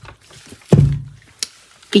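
Warm water sloshing and dripping in a glass bowl as hands move wet, sewn paper in it, with a short low sound about three-quarters of a second in and a light click later.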